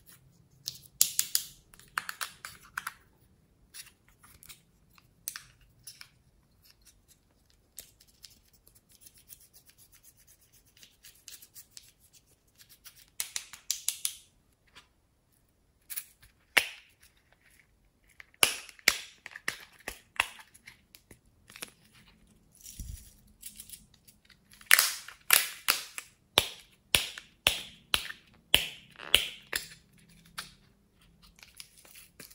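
Scratchy scraping of pressed powder makeup being dug out of a compact and an eyeshadow palette, in short clusters of strokes with quiet gaps between. A faster run of sharp strokes comes near the end.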